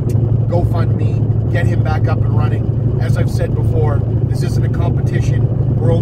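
Steady low drone of a moving car heard from inside the cabin, engine and road noise running evenly, with a man's voice talking over it.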